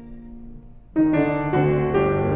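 Violin and piano playing a classical violin concerto: a soft held note fades away, then about a second in the music comes in loudly and forcefully, led by the piano.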